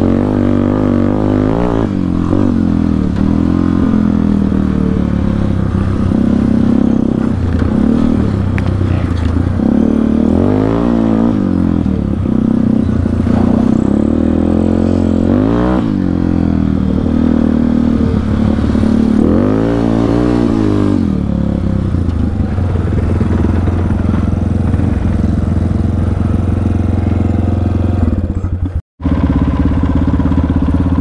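Yamaha Warrior 350 quad's single-cylinder four-stroke engine running hard through its aftermarket exhaust, heard from on board, its pitch climbing and dropping with the throttle several times. The sound breaks off for a moment near the end.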